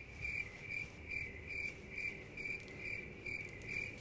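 Faint cricket chirping, short chirps evenly repeated a little over twice a second. In an indoor kitchen this is the stock comic 'awkward silence' cricket sound effect.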